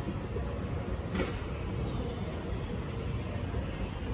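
Steady low rumble of a Schindler 9500AE inclined moving walkway running, with one short sharp click about a second in.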